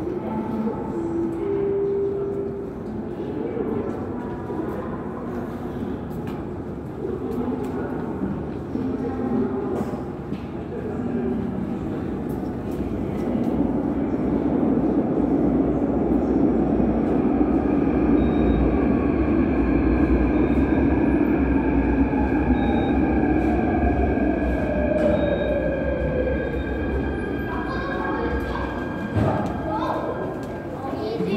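Seoul Metro Line 2 electric subway train (5th-batch trainset 246) pulling into the station. In the second half a rumble of wheels on rail grows louder, and the traction-motor whine falls steadily in pitch as the train brakes to a stop, fading out near the end.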